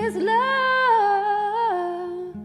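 A woman's voice singing one long wordless note that steps down in pitch twice, over a ringing acoustic guitar.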